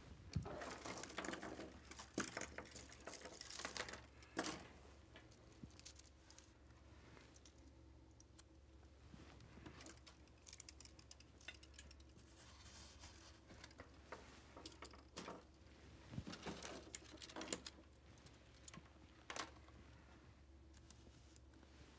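Faint handling noises, light clicks and rustles of small plastic lights on wire hooks being hung on curly willow branches, busiest near the start and again about three quarters of the way through, over a low steady hum.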